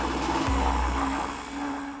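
Immersion blender running steadily in a metal bowl, held tilted to whip air into a liquid and froth it into foam.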